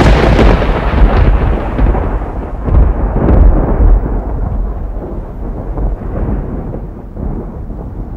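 Intro sound effect: a loud, deep rumbling crash that slowly fades away over several seconds.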